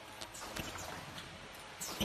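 Automatic folding mask machine running: its mechanism clacks in an uneven rhythm of sharp knocks, with the loudest near the end, over a steady machine hum.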